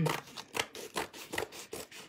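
Scissors cutting through artist's canvas: a run of short snips, about two or three a second.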